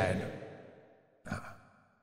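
A man's voice trailing off, then one short in-breath close to the microphone about a second and a quarter in.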